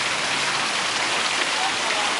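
Fountain water pouring from a statue's jar and splashing into a stone basin: a steady, even splashing hiss.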